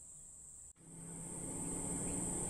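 Dead silence for under a second, broken by an abrupt edit click. Then a steady, high-pitched insect chirring returns faintly, with a faint low background rising under it.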